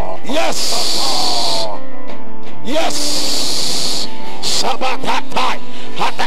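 Loud live church music with held chords, and voices rising and falling over it. A hissing wash comes in twice, in the first and in the third and fourth seconds.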